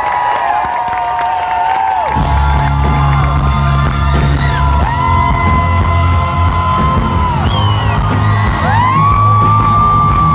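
Live pop-rock band playing, its bass and drums coming in heavily about two seconds in, under long held, wordless sung notes with crowd whoops and yells.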